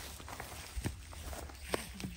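Footsteps on grassy, stony ground: a few soft steps about a second apart.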